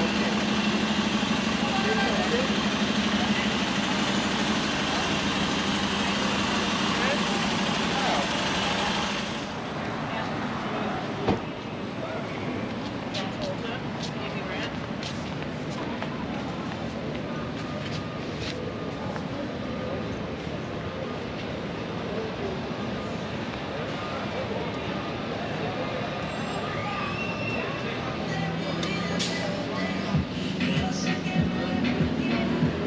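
A sightseeing double-decker bus idles at the curb with a steady engine hum for about the first nine seconds. The sound then cuts abruptly to quieter busy-sidewalk ambience: passers-by talking, footsteps and scattered clicks, with one sharp knock shortly after the cut.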